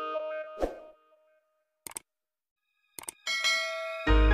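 Background music cuts off with a short thud, and after about a second of near silence come two quick click sound effects and a ringing chime from a subscribe-button animation, running into new music.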